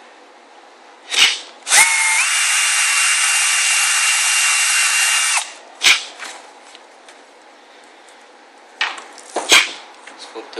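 Cordless drill running with a small bit in a synthetic rifle stock: a brief blip, then a steady whine for about three and a half seconds that steps up in pitch soon after it starts and stops suddenly. It is followed by a sharp knock and, near the end, a few more knocks as the stock is handled and turned over.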